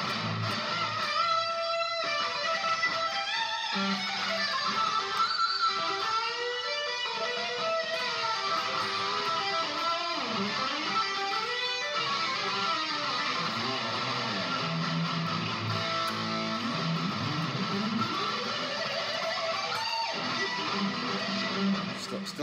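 2017 Gibson Les Paul Classic electric guitar played through a Marshall DSL40 amp, with delay from a BOSS GT-100: a continuous single-note lead line of sustained notes, string bends and vibrato.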